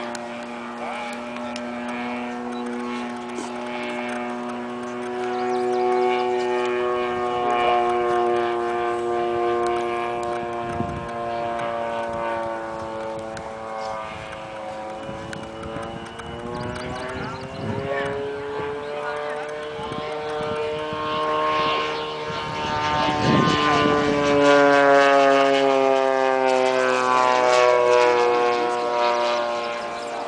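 The 3W 85 gasoline engine of a large radio-controlled Spitfire model, turning a three-blade propeller, drones in flight. Its pitch rises and falls several times as the plane circles, and it is loudest in the last third.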